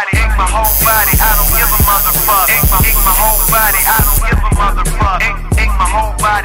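Hip hop track with rapped vocals over a deep, sustained bass line and kick drums; a bright hiss sits over the top from about half a second in until about four seconds in.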